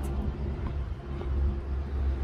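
Wind blowing on a handheld camera's microphone outdoors: a low, uneven rush with no speech or music over it.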